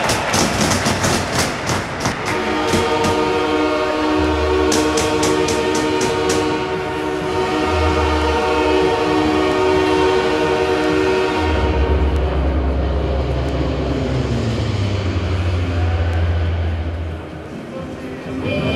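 Arena goal horn over the rink's PA: one long steady horn tone of several seconds that slowly fades, with a heavy bass beat of music underneath. Quick runs of sharp clacks come in the first few seconds and again about five seconds in.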